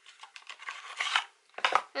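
Small cardboard box and paper insert being handled and opened: a run of short rustles and scrapes, with a louder one near the end.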